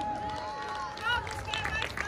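Outdoor crowd murmur: scattered distant voices and short calls, with a steady high tone held for about the first second.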